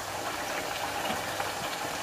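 Chopped onions sizzling in hot vegetable oil in a non-stick frying pan, a steady hiss, as spoonfuls of blended pepper mixture go into the hot oil.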